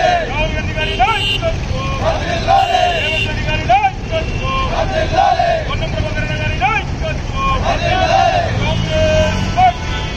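A group of men shouting protest slogans together in repeated short calls, over a steady rumble of road traffic.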